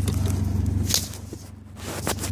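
Rustling and a couple of sharp knocks from a phone being handled and set down, over a car's steady low engine drone.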